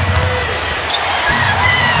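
Broadcast sound of an NBA game in an arena: a basketball being dribbled on the hardwood court over a steady wash of crowd noise.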